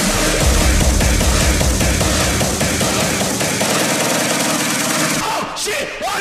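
Electronic music track with rapid, dense drum hits. The bass falls away about two-thirds through, leading into a short break with sweeping tones near the end.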